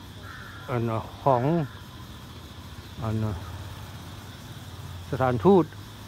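A man speaking in short phrases, with pauses between them, over a steady low background hum.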